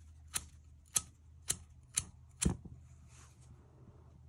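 1994 Zippo lighter's flint wheel struck with the thumb five times, sharp clicks about twice a second, the last strike the loudest, until the wick lights.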